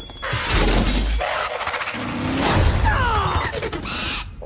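Movie sound effects of glass shattering and crashing, in bursts, with orchestral film music underneath.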